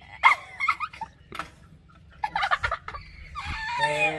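People laughing and shrieking in short excited bursts, with a longer high cry that falls in pitch near the end.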